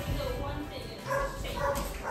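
Pit bull mix barking at a cat in two short calls, about a second in and again just after.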